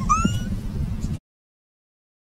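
A person's high-pitched wailing cry, one short rising call like a meow, over a low background rumble. The sound then cuts off abruptly to dead silence about a second in.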